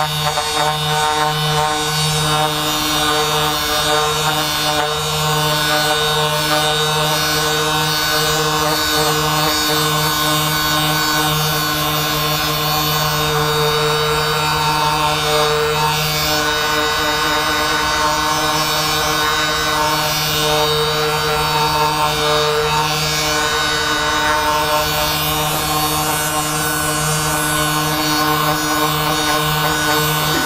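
Handheld percussion massage gun running steadily against the back, a constant buzzing motor hum that wavers slightly as it is pressed and moved.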